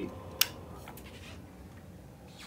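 A single sharp click about half a second in, as the lighted rocker switch on a power strip is flipped off, over a faint steady hum.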